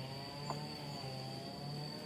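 A steady, high-pitched insect trill in the background, with a faint low hum beneath it and one small click about halfway through.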